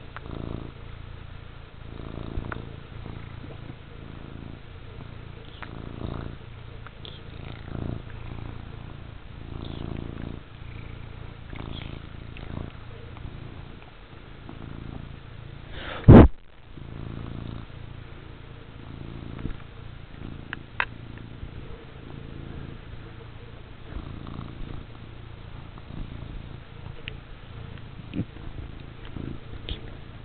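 Domestic cat purring close to the microphone, swelling and easing every second or two with its breathing. One loud knock on the camera about halfway through.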